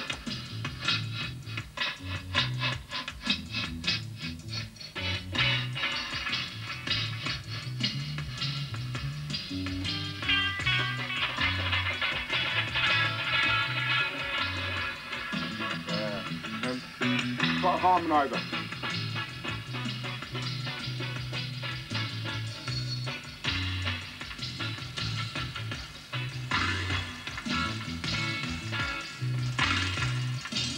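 A reggae band of drums, bass guitar and guitar playing a live dub mix. Reverb and echo are added at the desk, and instruments drop in and out over a steady bass line. A swooping, rising effect sounds a little past halfway.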